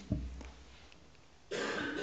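Quiet room tone in a pause between spoken sentences, then a sudden short breathy vocal noise close to the microphone about one and a half seconds in.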